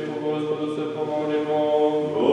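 Orthodox liturgical chant: a man's voice intoning on a steady, nearly unchanging pitch.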